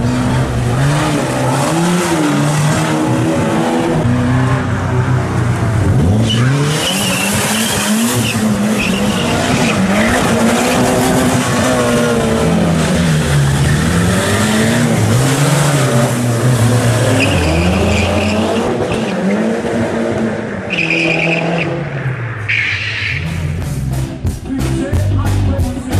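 A car being driven hard: its engine revs up and down again and again while the tyres squeal and skid in several bursts, the sharpest near the end.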